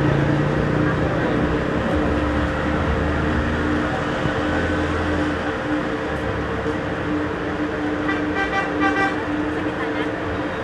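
Roadside traffic noise with people talking in the background, and a brief pitched horn toot about eight seconds in.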